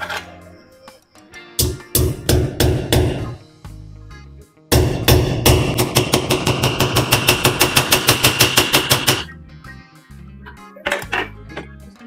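A hammer driving one-inch nails through a ceiling-frame bracket into the wall: a few separate blows, then a fast even run of about five blows a second for four seconds.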